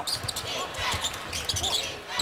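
Basketball being dribbled on a hardwood court, with a few low bounces, over the steady murmur of an arena crowd.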